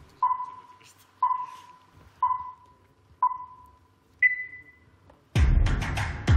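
Electronic countdown beeps: four short identical beeps a second apart, then a fifth, higher-pitched beep. About a second later dance music with a strong beat starts.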